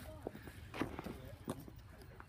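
Faint footsteps on a paved footpath: a few soft, irregular taps as someone walks.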